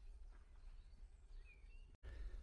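Near silence: faint outdoor background with a single faint bird chirp about one and a half seconds in.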